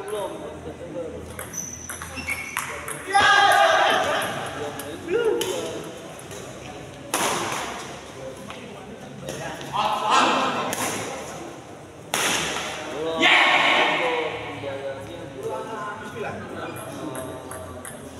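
Badminton rally: rackets strike the shuttlecock with sharp cracks every few seconds, the hardest hits being smashes that echo briefly in the hall. Players' shouts and calls come between the shots.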